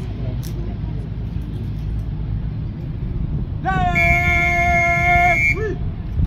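A drill commander's shouted word of command, drawn out and held for about two seconds in a steady pitch, then cut short by a brief sharp syllable, over a steady low rumble of wind on the microphone.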